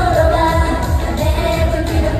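Live J-pop idol song: a group of female voices sings over a pop backing track. A kick-drum beat lands about three times a second.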